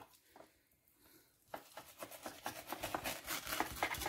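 Filleting knife scraping along the skin of a small flatfish fillet on a plastic cutting board as the skin is cut away, a faint run of short, irregular scrapes and clicks starting about a third of the way in.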